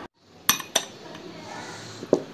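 Two sharp clinks of a glass tumbler being handled, about half a second in and a quarter second apart.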